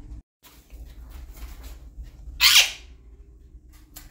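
A caged parrot gives one short, harsh squawk about halfway through, over faint clicks and a steady low hum.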